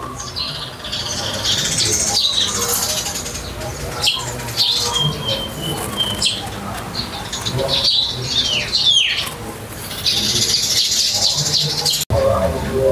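Birds chirping and calling, with a held high note about halfway through and a few quick notes falling in pitch soon after.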